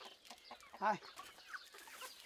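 A domestic chicken clucking: one short, loud cluck a little under a second in, with a few fainter calls around it.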